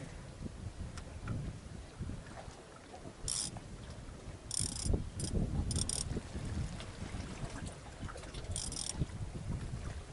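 Wind buffeting the microphone throughout, with five short, high-pitched rasps from the surfcasting rod's reel as it is worked at the rod's base.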